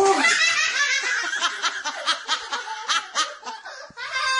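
A young child laughing hard in rapid, high-pitched bursts that start suddenly and ease off near the end.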